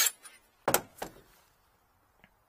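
Handling knocks from a DeWalt cordless drill: a click as the bit is pulled from its chuck, then a thunk about three-quarters of a second in as the drill is set down on the metal floor panel, with a smaller knock just after.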